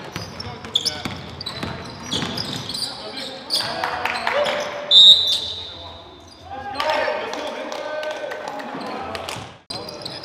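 Live gymnasium game sound: a basketball bouncing on a hardwood court, shoes scuffing and players' voices echoing in the hall. About five seconds in comes a brief, loud, high-pitched squeak, the loudest moment.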